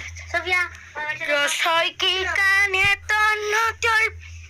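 A child's high voice singing in several short phrases with brief breaks between them, the later phrases held on long, steady notes.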